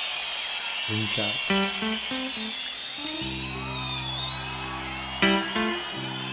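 Live concert recording of a guitar playing a few single notes about a second in, then holding a sustained chord from about three seconds in, over a steady bed of crowd noise with high whistling.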